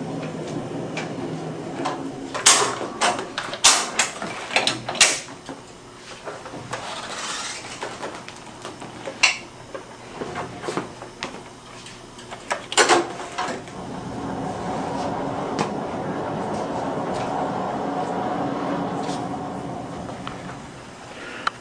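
An overhead X-ray tube head being swung and rotated by hand, its locks and detents giving a run of sharp clicks and clunks in the first five seconds and single ones at about nine and thirteen seconds. A steadier noise follows in the last several seconds.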